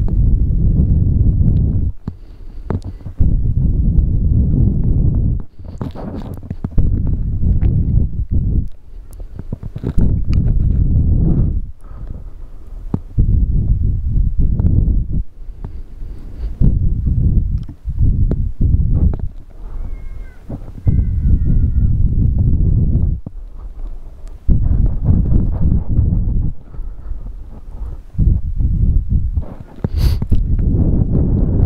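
Strong wind buffeting the microphone: a deep, rough rumble that swells and drops off in gusts every second or few seconds.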